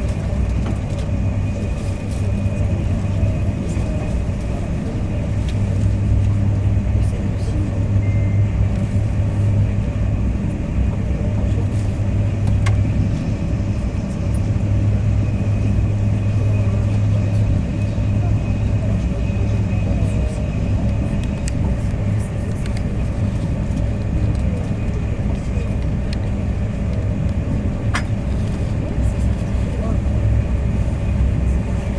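Steady low rumble of a Thalys TGV high-speed train running at speed, heard inside the passenger car, with a faint high whine and a couple of small clicks.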